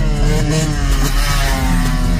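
Dirt bike engine revving as it rides past close by, its note falling in pitch over the second second.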